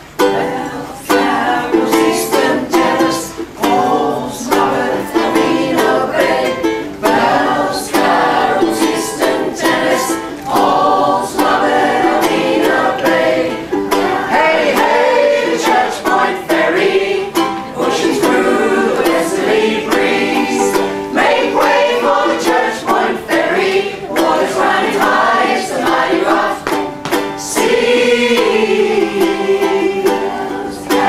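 A mixed group of men's and women's voices singing a song together to a strummed ukulele, starting suddenly with the first strum.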